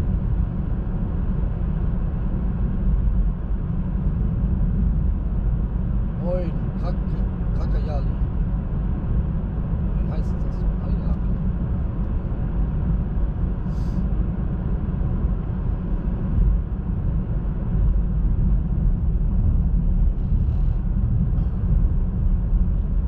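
Steady low rumble of tyres and road noise inside a moving car's cabin.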